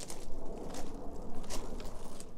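Wind buffeting the microphone outdoors, an uneven low rumble, with a few faint steps as the camera operator walks.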